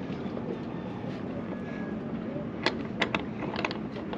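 Stainless-steel rigging turnbuckle being screwed by hand onto a shroud fitting, giving a few light, sharp metallic clicks in the second half, over a steady low hum.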